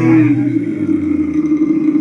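A live rock band breaks off, leaving a single held note sounding steadily from guitar or keytar, with a lower note underneath fading out near the end.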